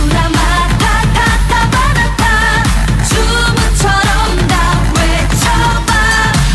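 Pop song playing: a singer's voice over a steady dance beat with a pulsing bass.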